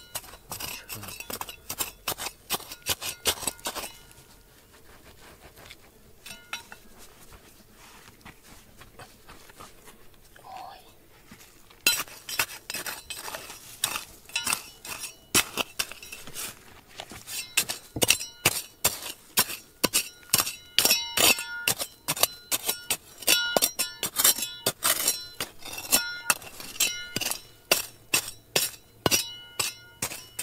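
Small metal hand trowel scraping and striking dry, gravelly soil and stones: a quick run of sharp clinks and scrapes. It eases off for several seconds in the middle, then comes back dense and loud for the rest.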